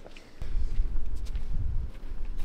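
Loud, irregular low rumble of wind on the microphone starting about half a second in, with faint footsteps of people walking.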